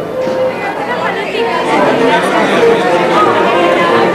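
Many people talking at once: overlapping crowd chatter with no single voice standing out.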